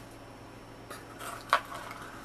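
Hands rummaging in a small box of paper flowers: quiet at first, then a short rustle and scrape with one sharp tap about one and a half seconds in.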